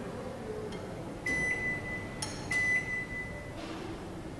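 Glen GL 672 built-in microwave oven's touch control panel beeping as its buttons are pressed: two high, steady beeps about a second and a quarter apart.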